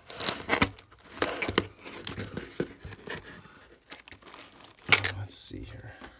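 Knife slitting the packing tape on a cardboard box: a series of short ripping strokes, with the cardboard rustling as the flaps are worked open. The loudest rip comes about five seconds in.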